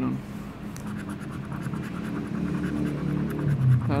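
A coin scratching the latex coating off a paper scratch card in repeated short strokes.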